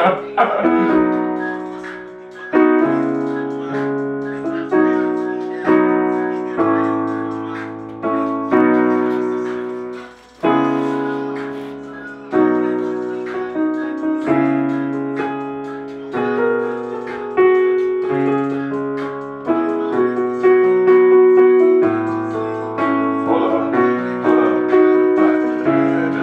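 Digital piano playing a slow run of chords, each struck and left to ring out, about one a second, with a short break just before ten seconds in.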